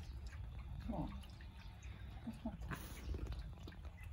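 Boxer dog making a few short whining calls as he begs for a drink of tea.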